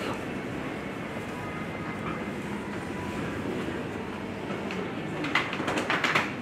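A stack of plastic crates pushed along on wheels, rumbling steadily over the floor, with a quick run of sharp clatters near the end.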